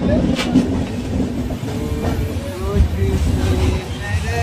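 Two trains running side by side on adjacent tracks, heard from an open coach door: a steady loud rumble of wheels on rail with a few sharp clacks.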